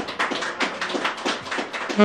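Hand claps keeping a steady beat, about four a second, counting in the tempo before the saxophone comes in.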